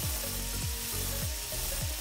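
Angle grinder cutting small notches into the steel jaw of a pair of round-nose pliers: a steady high hiss with a faint motor whine. Background music with a regular beat plays under it.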